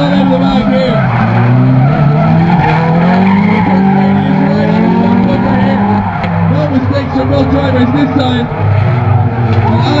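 Two drift cars, a Nissan Silvia and a Toyota Corolla, sliding in tandem: engines held high in the revs, rising and falling in pitch, over continuous tyre squeal and skidding. The engine note climbs steadily for the first few seconds and drops off about six seconds in before picking up again.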